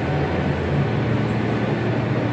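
Steady background din of a busy exhibition hall: an even wash of noise with a faint low hum underneath.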